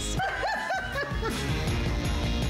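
A woman's short, delighted laugh, a few quick rising-and-falling bursts in about the first second, over background music.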